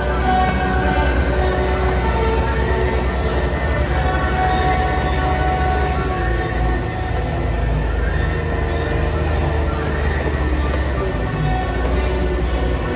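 Several Cat compact track loaders, including a 259D3 and a 239D3, running their diesel engines as they drive and turn on their rubber tracks, a steady low rumble. Music plays over them with long held chords.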